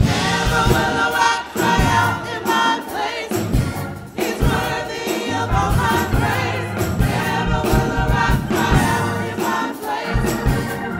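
Gospel praise team of several voices singing together with a live church band: sung melody over a bass line and a steady drum beat.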